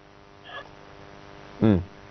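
A pause in a conversation with a faint steady hum, ending in a man's short "mm" near the end.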